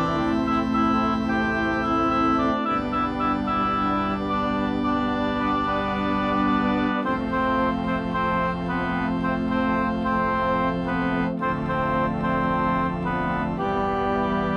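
Instrumental darkwave music: slow, held organ-like keyboard chords that change about every four seconds over a steady deep low end, with no vocals.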